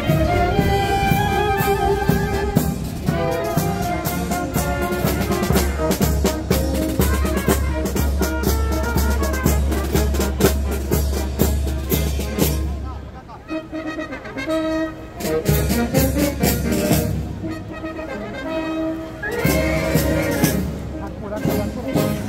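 Brass band playing a processional march, with trumpets and trombones carrying held notes over a low bass line. The playing drops back about thirteen seconds in, then fills out again.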